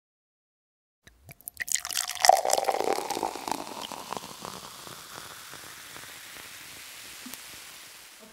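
Beer being poured into a glass: a few clicks at the start, then a splashing, crackling pour that tails off into a faint, steady fizz.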